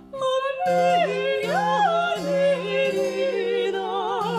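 Soprano and mezzo-soprano singing a late-18th-century Brazilian modinha as a duet in classical style, with wide vibrato and sliding between notes. They are accompanied by spinet and classical guitar, and a new sung phrase begins just after the start.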